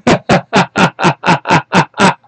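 A man laughing loudly and excitedly in a quick, even run of "ha"s, about four a second, each dropping in pitch.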